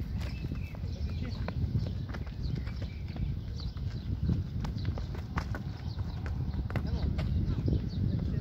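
Wind rumbling on the microphone, with scattered sharp knocks of a football being kicked and running footsteps on asphalt. Faint distant voices of players calling are heard now and then.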